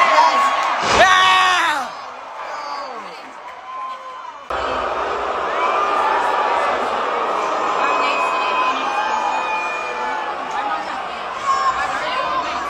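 Live wrestling arena crowd shouting and cheering, with one sharp slam about a second in. About four and a half seconds in the sound cuts abruptly to a dense, steady din of many crowd voices.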